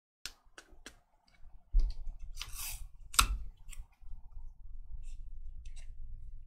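A stack of 2022 Topps Series 1 baseball cards being flipped through quickly by hand. The cards slide and snap against each other in sharp clicks and short scrapes, the loudest about three seconds in, over a low rumble.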